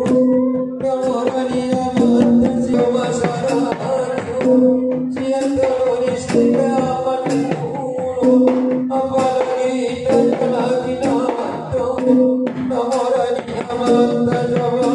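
Mandailing gondang music for the tor-tor dance: laced two-headed gondang drums beating a busy rhythm under amplified onang-onang singing, with long held notes that come back every couple of seconds.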